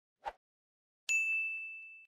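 Logo-intro sound effect: a brief tick, then about a second in a single bright ding that rings on one high tone and fades away.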